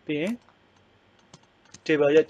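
A short spoken syllable, then a quiet stretch with a few faint computer clicks. Speech starts again near the end.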